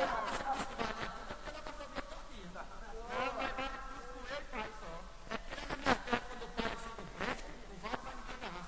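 A man's voice singing or chanting repente verse, wavering and sliding in pitch, with a few sharp strikes in the second half.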